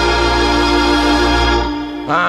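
Hammond organ holding one steady chord, with a low bass note under it, easing off slightly just before the end.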